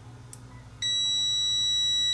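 TESMEN TM510 digital multimeter's continuity beeper giving a steady, high-pitched beep as its test probe tips touch, the sign of continuity detected. The beep switches on sharply a little under a second in and holds.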